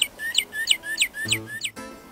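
National Audubon Society bird watch playing a recorded bird song through its tiny speaker: a run of about six rising whistled notes, about three a second.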